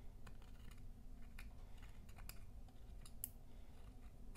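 Faint, irregular clicks and scrapes of a thin metal depotting tool digging pressed eyeshadow powder out of the pans of a palette.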